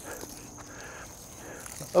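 Insects singing outdoors in late summer: a steady, thin, high-pitched drone, with a few faint scuffs of a shovel in dry soil.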